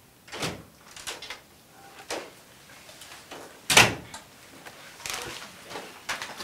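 A handful of separate knocks and thumps, the loudest nearly four seconds in.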